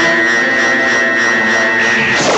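Loud science-fiction sound effect of an alien spacecraft: a steady electronic drone of many held tones with a light pulsing.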